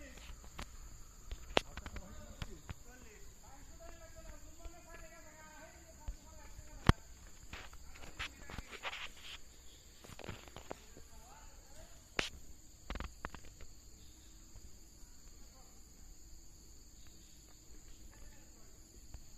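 Steady high-pitched insect drone, with a few sharp clicks or knocks (one about seven seconds in is the loudest) and faint distant voices in places.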